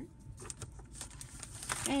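A stack of paper sliding into a plastic stacking paper tray, with light rustling and a few soft clicks.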